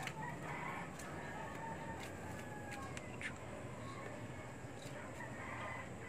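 Faint bird calls, twice: about half a second in and again near the end, with a few light clicks between them.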